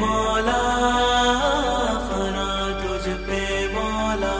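Background music made of long held notes, with a melody that wavers and bends in pitch about a second and a half in.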